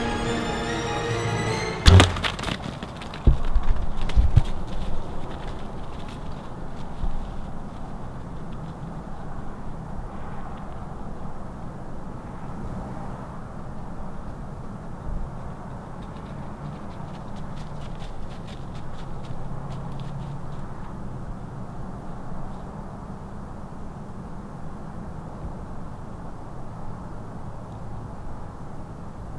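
Background music that stops about two seconds in, on the sharp crack of a bow shot at close range. A few dull thumps follow, then a low steady background noise.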